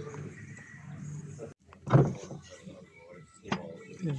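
A ceramic cup and wooden serving board set down on a glass tabletop, with a sharp clink of crockery on glass near the end. A brief voice sounds about halfway through, over a low steady hum.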